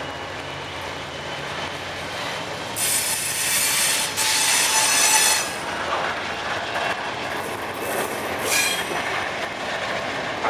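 Double-stack intermodal freight train passing close by, its cars rumbling and clattering steadily. The steel wheels squeal loudly for a couple of seconds about three seconds in, and again briefly near the end.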